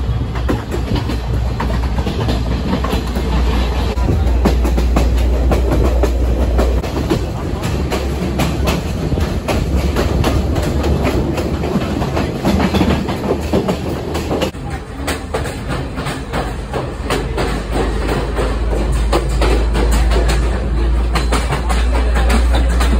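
Passenger train running along the track, heard from an open doorway: steady wheel-on-rail clatter with frequent sharp clicks over rail joints and a heavy low rumble. The sound changes abruptly about two-thirds of the way through.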